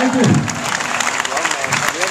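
Live audience applauding at the end of a song, a dense spatter of clapping, with a man's voice heard briefly at the start.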